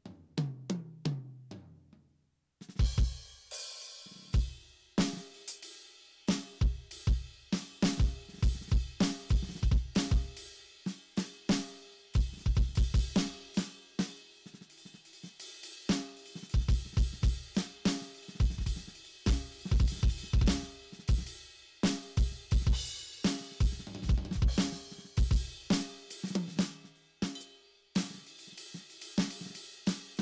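Simmons SD1250 electronic drum kit's Bubinga kit (drum kit six) played through its sound module: a beat of kick, snare, hi-hat and cymbal hits. It opens with a tom fill falling in pitch and a brief stop a little over two seconds in, with another tom fill near the end.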